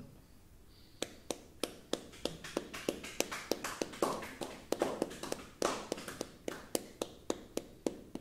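Computer keyboard keystrokes and mouse clicks: sharp, irregular taps, about three a second, with a few softer rustles in between.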